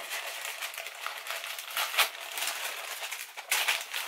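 Paper packing inside a cosmetics box rustling and crinkling as it is pushed aside by hand, with louder crackles about two seconds in and again near the end.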